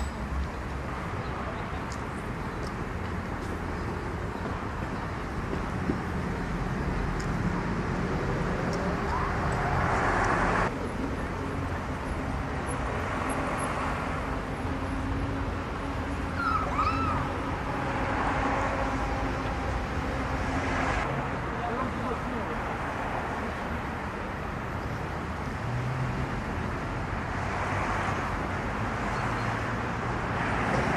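Steady background hum with faint, indistinct voices, and a brief high chirp about halfway through.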